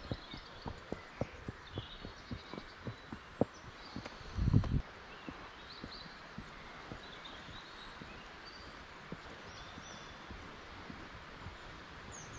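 Horse's hooves walking on a dirt path, about four soft hoofbeats a second, dying away after about four seconds as the horse moves onto grass. A brief low rumble about four and a half seconds in, and birds chirping faintly in the background.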